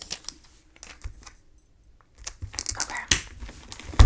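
Clear plastic sleeve pages of a ring-binder sticker album being handled and turned: a few soft clicks at first, then a busier run of rustling and clicking in the second half.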